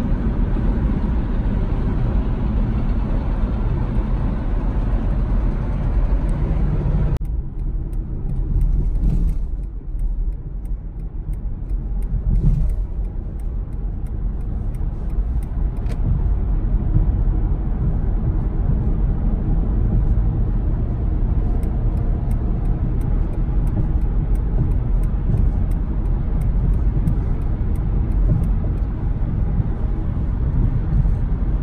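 Road and engine noise inside a car cruising at highway speed, a steady low rumble. About seven seconds in it changes abruptly to a duller, more muffled rumble, and faint rapid ticks come in near the end.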